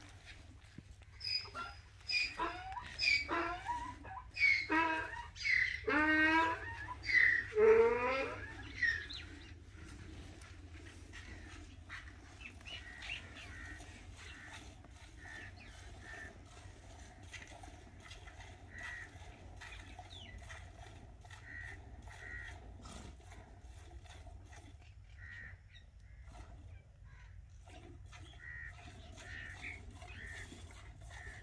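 Several loud animal calls with a wavering pitch in the first nine seconds. Then faint, regular squirts of milk hit a steel pot as a cow is milked by hand.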